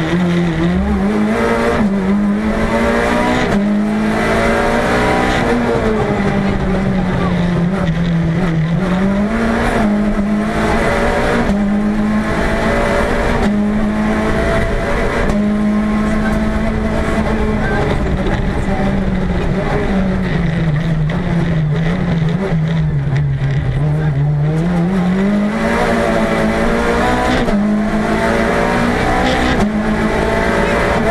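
Peugeot 206 Group A rally car's four-cylinder engine driven hard on a rally stage, heard from inside the cabin. Its pitch climbs and drops again and again with gear changes and lifts, with a longer lower stretch about two-thirds of the way through.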